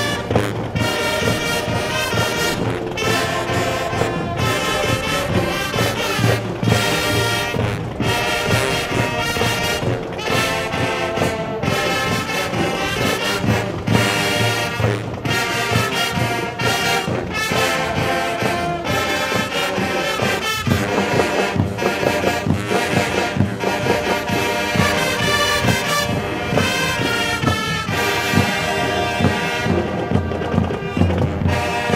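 A marching band playing: a full brass section with marching drums, one continuous piece at full volume.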